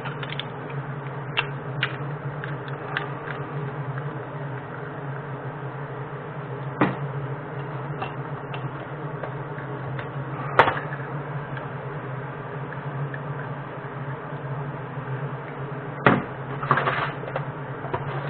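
A steady low hum runs under scattered sharp metallic clinks of metal casting moulds and lead castings being handled. The three loudest clinks come about a third of the way in, just past halfway, and near the end, followed by a quick cluster of clinks.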